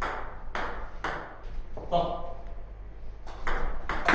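Table tennis rally: a celluloid-type ball clicking off the bats and the table, a quick run of hits and bounces about half a second apart, then a few more clicks in quick succession near the end.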